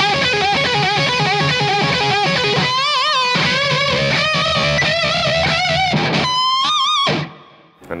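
Unaccompanied electric guitar, a Gibson Les Paul Custom, playing a riff full of string bends with wide vibrato. Near the end it settles on one held bent note with vibrato, then stops.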